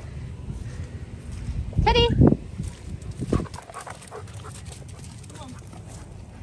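Low, uneven rumble of wind on the microphone of a phone filming outdoors, with faint sounds of dogs moving about.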